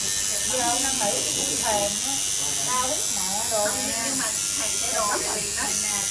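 Electric tattoo machine buzzing steadily as it works ink into skin, with women's voices talking over it.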